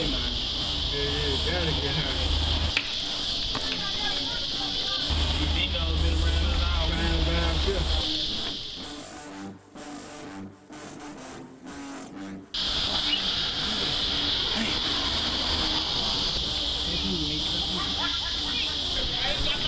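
Indistinct talking with music underneath and a steady high-pitched hiss or buzz. About nine seconds in, the sound drops away to something quieter for a few seconds, then comes back suddenly.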